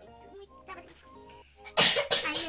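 Soft background music with held notes, and near the end a single loud, sharp cough from a young woman.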